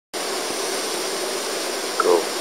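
Steady rushing splash of a large water fountain.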